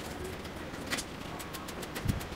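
Trigger spray bottle squirting diesel onto a dirty motorcycle drive chain: one short spray about a second in, with faint brush scrubbing and ticks on the chain.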